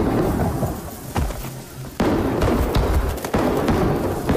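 Fireworks going off: a dense crackle of bangs and booms that grows louder about two seconds in.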